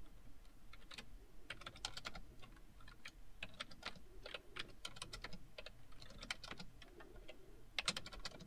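Faint typing on a computer keyboard: short runs of keystrokes as numbers are entered, with a slightly louder pair of key presses near the end.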